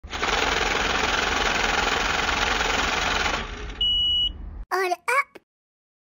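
Intro sound effects: a harsh, dense noise for about three seconds, a short high beep, then two quick syllables of a voice tag, after which the sound cuts out.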